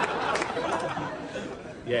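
Studio audience laughter fading away after a punchline.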